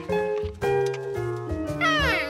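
Cartoon background music: a run of plucked or mallet-like notes over a bass line. Near the end, a high, gliding, squealing cartoon monkey voice starts up.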